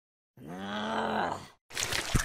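A voiced groan, one drawn-out call of about a second whose pitch rises slightly and then falls, starting a moment in. Near the end, after a brief gap, a different, noisier sound with clicks begins.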